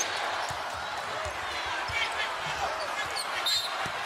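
Steady arena crowd noise with a basketball being dribbled on a hardwood court: a run of dull bounces about every half second.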